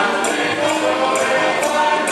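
Live Afro-Cuban rumba band: several voices singing together in chorus over guitar, with sharp hand-percussion strokes recurring through the music.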